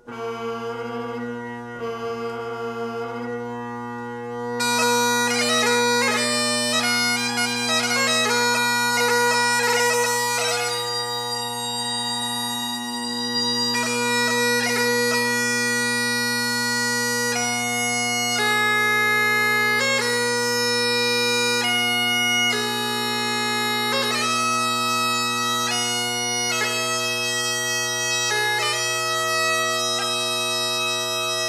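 Great Highland bagpipe playing piobaireachd: a steady drone chord sounds under the chanter throughout. After a quieter opening of a few seconds the chanter comes in louder with a run of quick ornamented notes, then moves on to long held notes.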